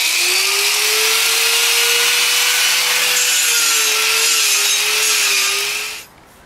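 A handheld power tool grinding down rough concrete and old floor adhesive. Its motor whine rises as it spins up, then holds steady under a loud, hissing grind, and it cuts off near the end.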